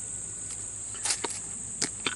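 Steady high-pitched buzz of insects in the surrounding grass and brush, with a few light clicks about a second in and near the end as items are handled in a range bag.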